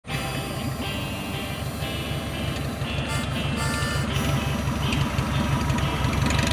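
Background music with a steady beat, over the running engine of a 1946 Taylorcraft BC-12D: its Continental A65 flat-four, propeller turning as the plane taxis.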